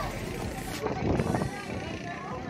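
Pumpboat engine running steadily, with people's voices rising over it about a second in.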